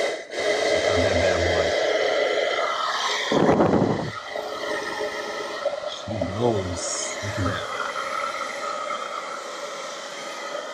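Amarine Made inline blower switched on and running, a loud steady whir with a hum in it, starting abruptly.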